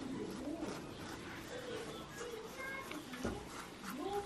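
Soft, wavering humming from a toddler chewing with her mouth closed.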